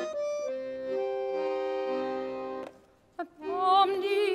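Accordion playing an interlude of held chords that stops about two and a half seconds in. After a brief pause, a mezzo-soprano starts singing again with a wide vibrato near the end.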